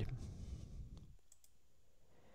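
A few faint clicks, like a computer mouse being clicked, over quiet room noise, with a low rumble fading out during the first second.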